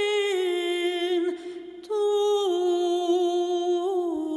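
A voice humming long held notes that each slide down a step in pitch, with a short break near the middle.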